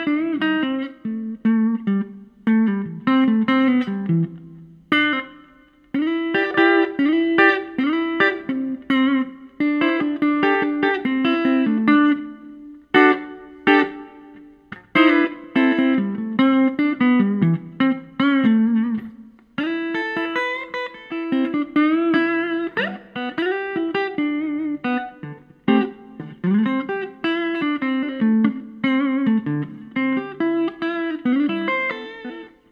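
Electric guitar played unaccompanied: a pentatonic lead solo in short phrases, sprinkled with pentatonic chords and minor and diminished arpeggios, with some bent notes and brief pauses between phrases.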